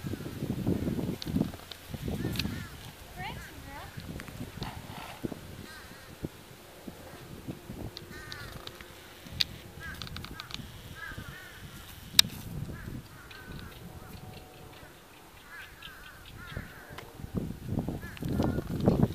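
Birds calling on and off in short, arched calls that come in little groups, over low thumps in the first few seconds and a few sharp clicks, the loudest about twelve seconds in.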